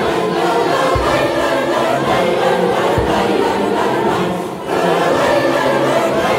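A large choir singing together, with a short break between phrases about four and a half seconds in. Brief low thumps fall underneath about every two seconds.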